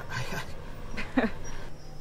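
A man's breathy, flustered exhale, then a short stammered 'I...' that falls sharply in pitch.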